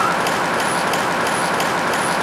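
Steady city street noise, a constant wash of traffic, with the end of a rising siren wail at the very start.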